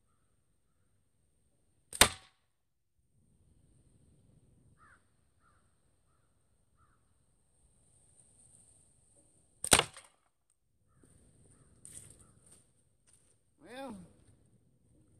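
Two slingshot shots about eight seconds apart, each a single sharp crack as the shot is loosed at a playing card target. A few softer knocks follow near the end, then a short voiced sound.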